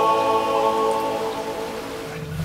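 A small group of yodellers holding a final sustained chord that slowly fades out, over a steady hiss.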